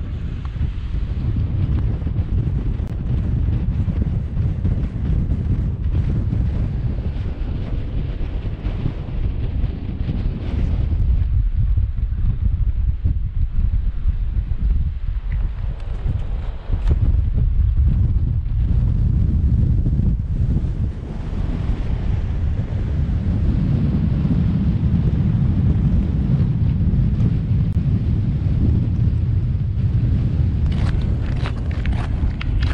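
Wind buffeting the microphone on an exposed mountain top: a loud, continuous low rumble that rises and falls in gusts.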